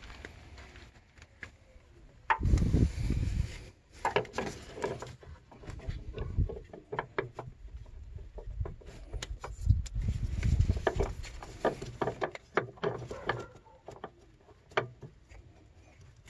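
Scattered clicks, taps and scrapes of gloved hands handling a diesel fuel filter and its housing in an engine bay, with louder low rumbles about two and a half seconds in and again around ten seconds in.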